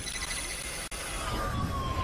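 Synthesized intro sound effects: a dense, noisy sweep with thin gliding tones, a slowly falling tone in the second half, and a split-second dropout just under a second in.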